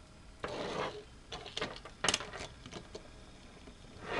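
Handling noise as a die-cast toy car is picked up and set down on a wooden surface: a soft rub about half a second in, then a run of light clicks and taps, the sharpest around the middle.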